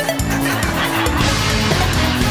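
Background music with layered sustained notes and a beat. About a second in, a hissing wash comes in over it.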